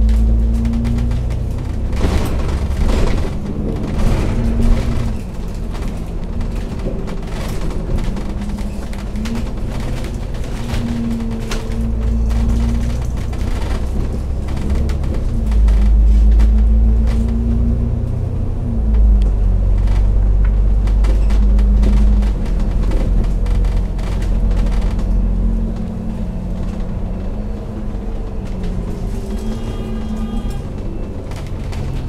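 Double-decker bus's diesel engine and drivetrain running under way, with a heavy low rumble and an engine note that rises and falls in steps as the bus pulls away and changes gear. Sharp knocks and rattles from the bodywork come through now and then.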